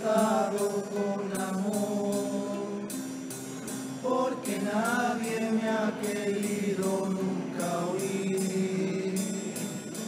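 Male chirigota chorus singing in harmony, several voices holding long notes that slide up and down in pitch.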